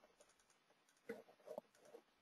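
Near silence with three faint, short computer clicks in the second half, as a model file is selected and opened.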